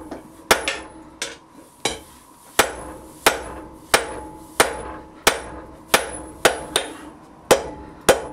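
Hand hammer forging a red-hot steel bar on an anvil: a steady run of about a dozen blows, roughly one and a half a second, each followed by a brief ring from the anvil. The blows are shaping the flat section and offset of a bolt tong half.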